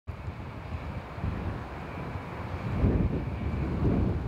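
Wind buffeting an outdoor microphone: an uneven low rumble that grows stronger over the last couple of seconds.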